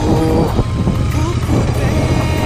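Royal Enfield Continental GT 650's 648 cc parallel-twin engine running steadily while the motorcycle is ridden, heard from the rider's own bike, with a man's voice calling out over it.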